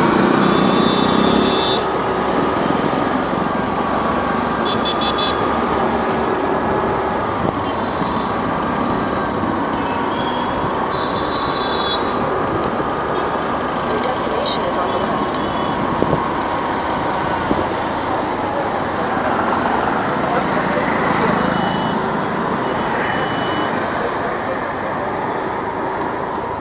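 Riding a scooter through dense city traffic: the steady run of its small engine under road and traffic noise, with short high horn beeps several times.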